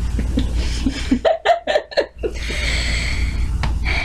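A young woman laughing: a quick run of short laughs about a second in, then a long breathy exhale as the laugh fades.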